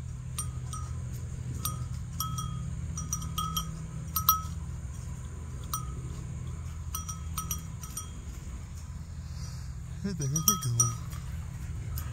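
A small metal bell clinking irregularly, each strike at the same pitch and ringing briefly, with a steady low hum underneath.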